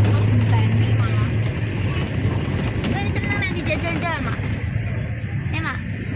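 Steady low drone of a car's engine and road noise heard from inside the moving car's cabin, with voices talking over it in the middle and near the end.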